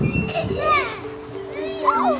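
A young child's high-pitched squealing voice, loudest in the first second, with children's playground voices over background music holding long, steady notes.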